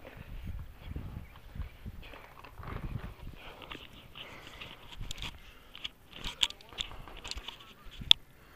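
Footsteps and handling noise from someone walking across grass with the camera, irregular low thumps at first, then several sharp clicks and knocks in the second half.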